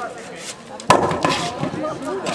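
A single sharp blow from a sword in staged sword combat, struck about a second in, with a short ring after it.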